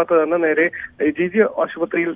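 Speech only: a man reporting in Malayalam over a telephone line, with the thin, narrow sound of a phone call.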